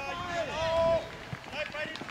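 Children's voices shouting and calling during a youth football match, with one long, high call about half a second in.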